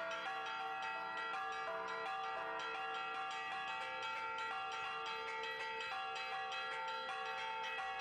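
Church bells pealing, many quick strikes overlapping into a continuous, ringing wash of tones.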